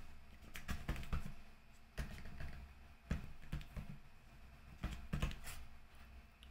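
Faint keystrokes on a keyboard, typed in a few short runs of clicks with pauses between them.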